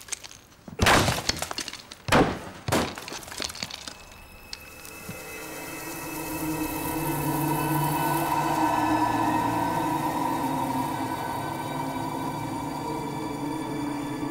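A hammer smashing into a plaster wall: heavy blows about a second in and twice more around two seconds, each with crumbling, cracking debris. From about four seconds sustained background music with held tones swells up and stays.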